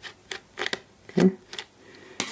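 A Phillips screwdriver turning out a small screw from the hard-drive bracket of a 17-inch MacBook Pro, making several light metal ticks in the first second.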